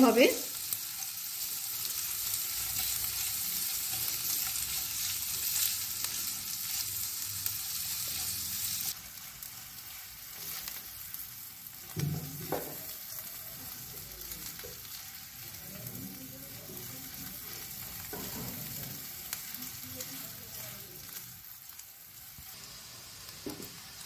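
Sliced red onions sizzling in hot oil and ghee in a non-stick frying pan, stirred and scraped with a silicone spatula. The sizzle is steady, then drops to a quieter level about nine seconds in, with a knock of the spatula against the pan near the middle.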